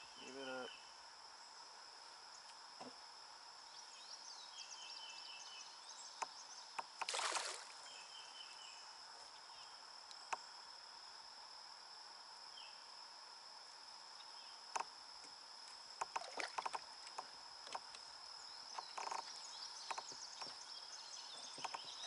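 A steady high-pitched insect drone over a quiet creek, with scattered small knocks and clicks from the kayak and fishing reel while a hooked carp is reeled in. A brief rushing noise comes about seven seconds in, and the clicks gather in the last third.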